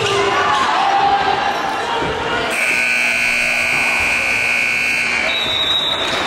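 Basketball gym scoreboard horn sounding one long steady buzz of about three seconds, starting a little over two seconds in, as the game clock reaches zero to end the first quarter. Voices in the gym carry on around it.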